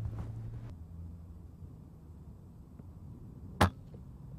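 A single shot from an FAC-rated FX pre-charged air rifle, one sharp crack near the end.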